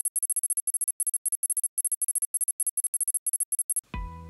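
A rapid, irregular string of very high-pitched electronic beeps, several a second, as an intro sound effect for animated on-screen text. It cuts off near the end.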